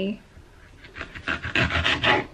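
Kitchen knife slicing a baby pepper on a wooden chopping board: a quick run of short cutting strokes, about four or five a second, starting about a second in.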